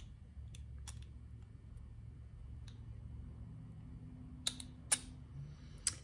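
Light clicks of small screws and metal parts being handled and fitted on a Walbro carburetor: a few faint ones in the first seconds, then sharper clicks about four and a half and five seconds in and again near the end, over a steady low hum.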